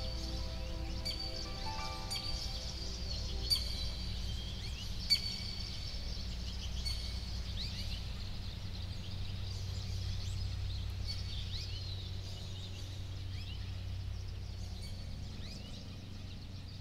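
Many birds chirping in short high calls over a steady low rumble, with soft sustained musical tones dying away in the first couple of seconds. There are two sharp clicks a few seconds in, and the sound slowly fades near the end.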